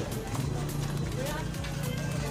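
Footsteps of rubber flip-flops slapping on a concrete walkway, a quick uneven run of sharp slaps, over a steady low hum and faint voices.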